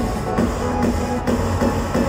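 Amplified electronic pop music with a steady beat of about two per second, played through an arena sound system and heard from the audience.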